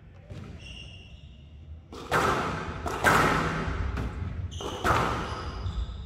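Squash ball being struck and rebounding off the glass court walls: three loud sharp cracks about a second apart, each ringing out in a long hall echo.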